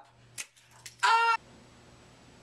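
A spring mousetrap snapping with a sharp click, then a fainter click, followed about a second in by a short, high yelp that cuts off suddenly.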